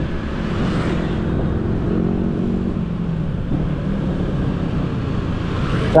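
Motor scooter engine running at a steady pace while riding along a road, its low hum mixed with road and traffic noise.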